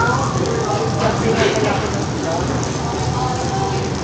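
Meat and sausage slices sizzling steadily on a hot tabletop grill plate, with voices in the background.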